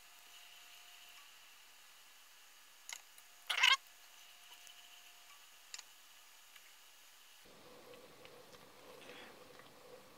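Mostly quiet, with a few faint clicks and one brief, louder scrape about three and a half seconds in, from a silicone spatula stirring hot sugar syrup in a cooking pot.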